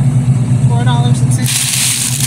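A steady low mechanical hum runs throughout. From about one and a half seconds in, thin plastic bread bags crinkle as a hand grabs a bag of garlic breadsticks.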